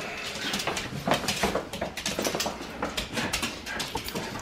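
A dog's small vocal sounds amid scattered clicks, footsteps and rustling on a wooden floor.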